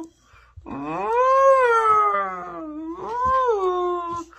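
A dog making long, drawn-out howling moans: one long call that rises then falls about a second in, then a shorter one near the end.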